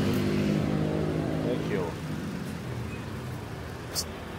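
A steady engine hum from a motor vehicle running close by, which fades away about halfway through, with voices faint in the background. A sharp click comes near the end.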